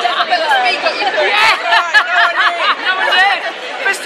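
Voices talking over one another and laughing, with crowd chatter behind them.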